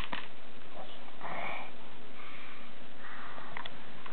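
A toddler sniffing and breathing softly close to the microphone, a few short breathy sniffs. There is a sharp click right at the start.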